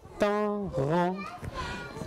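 A short spoken utterance in a high voice, about a second long, with the words not made out.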